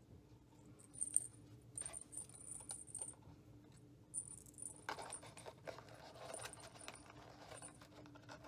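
Small metal jingle bell tinkling lightly in short bursts as it is handled on baker's twine, then soft rustling of twine and paper from about five seconds in.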